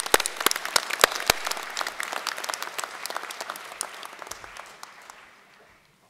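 Audience applauding, strongest at the start and dying away over about five seconds.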